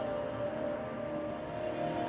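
Background ambient music with long held notes.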